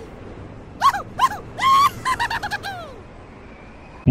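A few short, high-pitched squeaky yelps that rise and fall in pitch, ending in a longer falling whine, over a faint background hiss.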